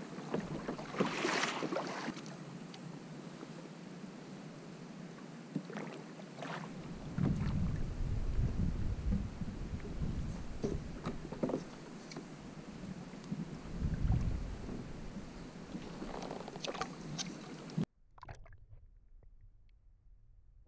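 Open-water ambience from a small kayak: wind on the microphone with low gusting rumbles, water lapping at the plastic hull and scattered knocks from handling fishing gear. About eighteen seconds in it drops suddenly to a much fainter underwater hush.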